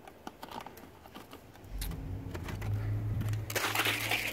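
Scattered light clicks and taps from handling a plastic spray bottle. From about halfway a low rumble of handling or wind noise on the microphone sets in, with a burst of rustling noise near the end.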